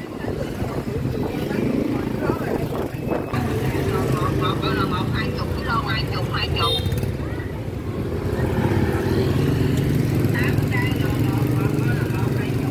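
Street traffic of motor scooters riding past with their small engines running, a little louder in the last few seconds, with people's voices in the background.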